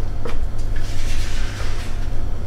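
Brownie batter being scraped out of a plastic mixing bowl into a lined baking tray: a soft scraping rasp starting about a second in and lasting about a second, over a low steady rumble.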